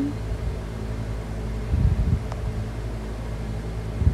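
Steady low background hum, like a room fan or air conditioner, with a couple of brief low rumbles about two seconds in and again near the end, and one faint click.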